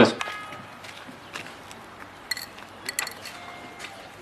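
A few light metallic clinks, short and ringing, scattered through a quiet open-air background; the clearest two come close together about three seconds in.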